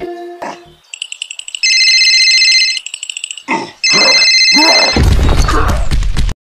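Cartoon sound effects over music: a high electronic ringing tone sounds twice, each for about a second, then a loud rumbling crash comes near the end.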